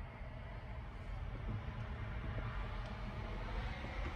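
Low, steady rumble of a Cummins four-cylinder turbo diesel idling, heard from inside the Jeep's cab.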